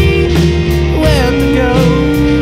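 Rock band music: held guitar tones over bass and drums, with a melody line bending in pitch.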